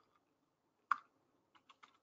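Typing on a computer keyboard: one sharper keystroke about a second in, then a few faint, quick keystrokes near the end.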